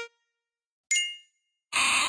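Edited-in comedy sound effects: a single bright ding about a second in that rings out and fades quickly, then a short burst of noise near the end.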